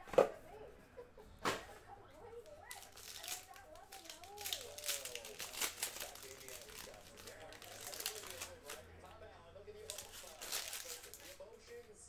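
Foil wrapper of a trading card pack being torn open and crinkled by hand, in two crackly stretches, after two sharp clicks near the start.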